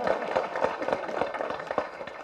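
Audience applauding: many hands clapping at once in a dense, steady patter.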